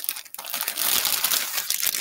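Clear plastic bag crinkling as it is handled and opened and fabric pieces are pulled out of it, starting about half a second in.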